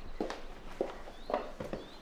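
Footsteps, about four evenly spaced steps, with a couple of faint short chirps among them.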